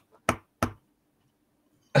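A pause in a man's talk: two brief, sharp little sounds close together in the first second, then quiet until he speaks again.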